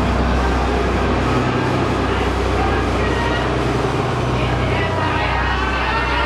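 Blue sleeper-train coaches and an electric locomotive rolling slowly past along the platform, a steady low rumble and hum, with a crowd of onlookers talking over it.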